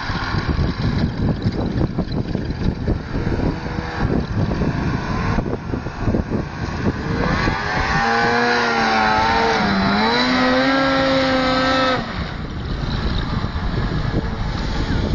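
Ski-Doo Summit 800R two-stroke snowmobile engine revving under load on a slope, at first half-buried in rough, gusty noise. From about two-thirds of the way in, its tone comes through loud and clear, dips briefly and climbs again, then cuts off suddenly.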